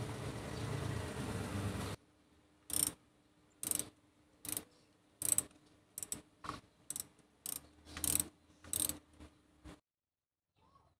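A ratchet wrench clicking in a series of about a dozen short strokes, turning a spark plug down a plug well of the Kia's 1.6 L Gamma engine. A couple of seconds of steady noise before it ends abruptly.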